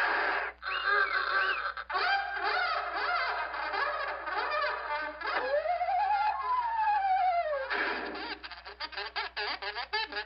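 Cartoon soundtrack music with comic sound effects: busy pitched sounds that bend up and down, one long tone near the middle that rises and then falls, and a quick run of short sharp notes over the last two seconds.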